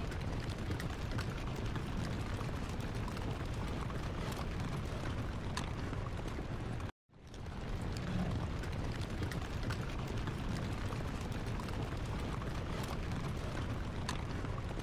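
A steady low rumbling ambient noise with faint scattered clicks, cutting out for a moment about halfway through and then resuming.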